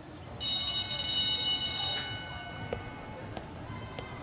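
A bright, high ringing tone from the animated short's soundtrack starts suddenly about half a second in, holds for about a second and a half and fades away, followed by a couple of soft clicks.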